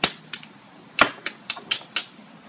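Hard plastic clicks and clacks of lipstick cases being handled: a loud snap at the start and another about a second in, with several lighter clicks between and after.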